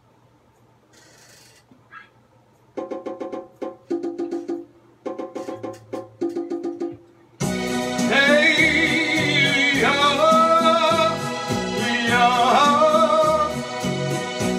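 Quiet at first, then a halting run of chords with short gaps, then about seven seconds in a full song starts: a man singing with vibrato over a full, steady accompaniment.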